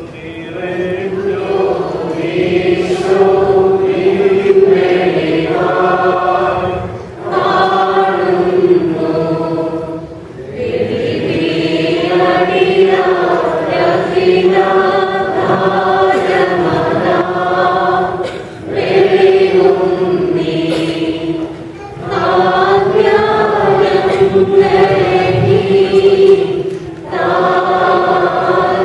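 A choir singing in long, held phrases, with short breaths between lines.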